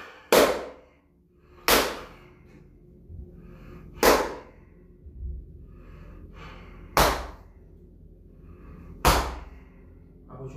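Five hard hand strikes on a bare back, irregularly spaced about two seconds apart, each a sharp smack that dies away quickly, with faint breathing between them.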